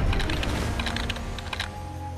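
A rapid run of small clicks, like keyboard typing, over soundtrack music; the clicking stops shortly before the end.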